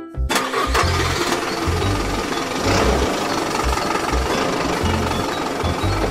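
A car engine sound effect: an engine starting up about a third of a second in and running with a noisy, rough rumble for the rest of the stretch, over children's background music.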